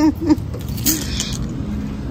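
Low steady outdoor rumble while passing through a glass shop door, with a brief rustling, handling-type noise about a second in.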